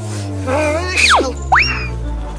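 Comedic cartoon sound effects over a steady background music track: a quick falling whistle-like glide about a second in, then a rising one that tails off slightly.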